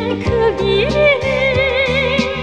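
Song with a female solo voice singing a long, wavering vibrato note that glides up about a second in, over instrumental accompaniment with a beat.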